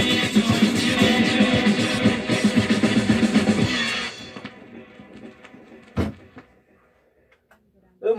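A song with guitar and drums playing from a vinyl record on a turntable, which stops about four seconds in and dies away. A single sharp click follows about two seconds later.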